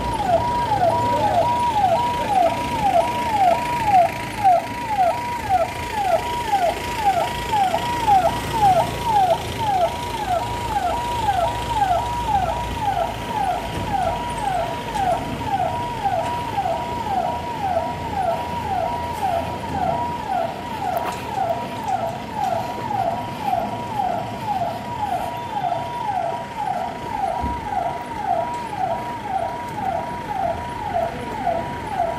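An electronic siren sounding in a fast repeating pattern, each call sweeping down in pitch, about two calls a second, steady throughout.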